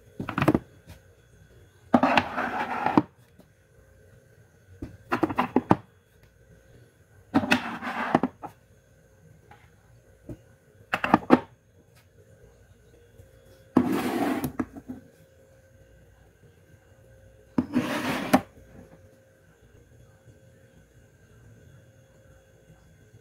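Metal food cans being set down and slid into place on a pantry shelf: a knock of tin on the shelf followed by a short scrape, about seven times a few seconds apart.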